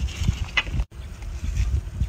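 Wind rumbling on the microphone outdoors, with a short scrape of a hoe blade in dry soil about half a second in. The sound drops out for an instant near the middle.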